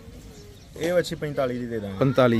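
A man speaking, starting about a second in. Before he starts, a faint, steady low coo, like a dove's.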